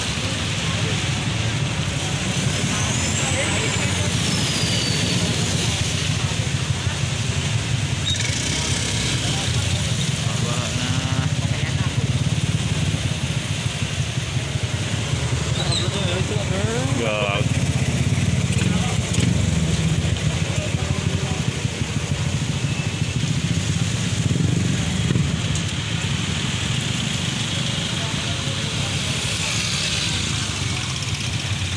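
Motorcycle engine running steadily at low speed, with tyre hiss on a wet road, heard from a motorcycle moving in slow traffic.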